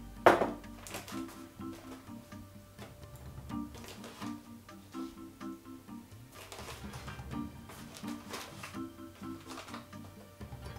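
Background music of short repeated pitched notes, with a loud sharp knock about a quarter second in as a metal measuring cup is set into a glass mixing bowl, and a few lighter clicks later on.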